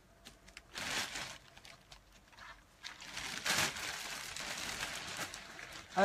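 Clothing being handled close to the microphone, the fabric rustling and rubbing: a short rustle about a second in, then a longer one from about three seconds in until just before the end.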